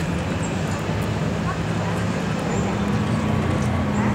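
Steady downtown street noise with the low hum of a vehicle engine running nearby, the hum growing a little louder in the second half.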